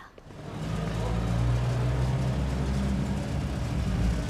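An open military jeep's engine running as the jeep drives up, a steady low engine drone that swells in about half a second in and holds.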